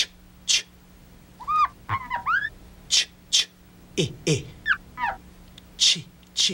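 A man repeatedly voices the 'ch' sound in short hissing bursts. Between them come squeaky rising-and-falling chirps and a couple of quick falling swoops.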